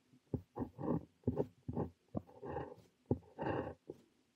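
Parker 45 fountain pen nib scratching across notebook paper in a quick run of short strokes as Korean characters are written.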